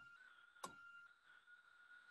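Near silence: room tone with a faint steady high whine and one soft click just over half a second in.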